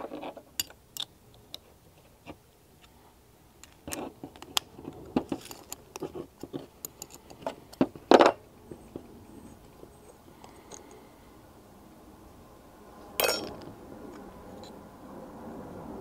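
Scattered light metal clicks and clinks of hand tools and carburetor parts as a float bowl is taken off an outboard motor's carburetor, busiest between about four and eight seconds in, with a sharper knock about eight seconds in and another short clatter about thirteen seconds in.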